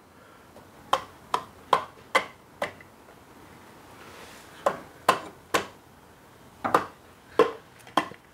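Sharp knocks and taps on a four-cylinder motorcycle cylinder block as it is worked down over the pistons and rings, about a dozen in three short groups.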